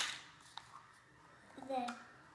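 A short crackle of clear plastic toy packaging as it is handled on a table at the start, a faint tick about half a second in, then a child's voice saying a word near the end.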